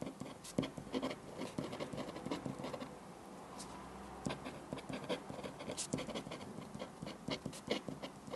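Someone working at a desk: quick, irregular light taps and scratches, several a second, over a low room hum.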